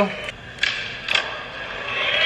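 Skateboard rolling on a smooth concrete floor, with two or three sharp clacks about half a second apart.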